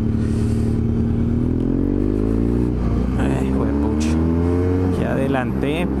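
BMW F800GS parallel-twin engine under hard acceleration to overtake: the engine note rises for about a second and a half beginning under two seconds in, holds, then falls back near the end.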